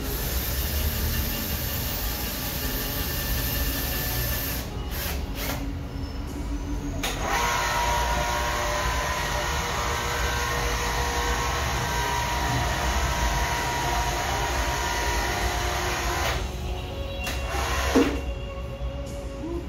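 An electric drill running against the ceiling for the first four seconds or so, then, after a short pause, the 110-volt electric hoist of a drum loader running steadily for about nine seconds as it lowers its loaded platform, with a steady motor whine.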